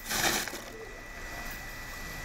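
Asian elephant's trunk sloshing water in a concrete trough as it drinks: a brief splash in the first half-second, then quieter low water noise.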